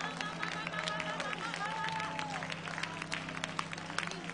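Church congregation clapping irregularly and calling out over sustained low organ notes during a pause in the preaching.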